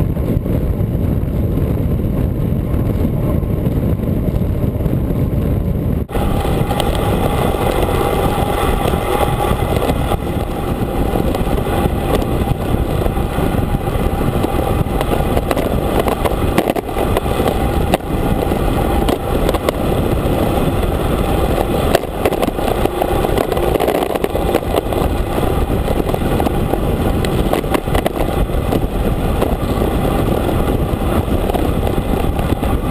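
Wind rushing over a bike-mounted camera's microphone on a fast road-bike descent: a loud, steady rush of air. About six seconds in it changes abruptly to a brighter, hissier rush.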